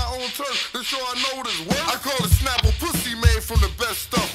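Hip hop song with rapped vocals over the beat; the bass and kick drum drop out for about the first second and a half, then come back in.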